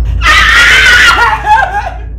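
A person's shrill scream, very loud, held for about a second and then breaking into wavering, falling cries.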